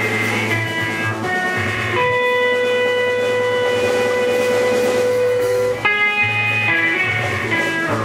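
Amplified Telecaster-style electric guitar playing a Mississippi juke-joint blues riff. About two seconds in, a single note is held and rings on for nearly four seconds before the riffing picks up again.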